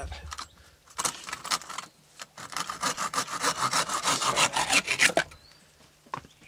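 Bow saw cutting across the top of a square wooden peg: a short run of strokes about a second in, then rapid, steady back-and-forth strokes for about three seconds that stop about five seconds in.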